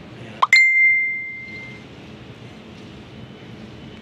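A single bright bell-like ding, a short rising swish followed by a sharp strike whose clear ringing tone fades away over about a second, over a steady low background rumble.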